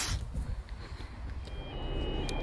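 Low steady rumble of an approaching freight train hauled by 81 class diesel-electric locomotives. Thin, steady high tones begin about a second and a half in.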